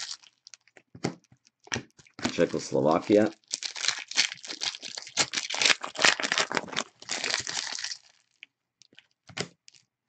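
Foil trading-card pack wrappers crinkling and tearing as packs are ripped open and handled, dense through the middle seconds and sparse at the start and end.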